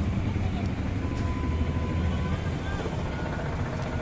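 Outdoor street ambience: a steady low rumble of traffic with faint, indistinct voices in the background.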